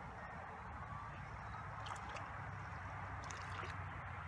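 Small splashes at the lake surface, a brief one about two seconds in and a longer one past three seconds, as a small hooked fish is reeled in, over a steady background hiss.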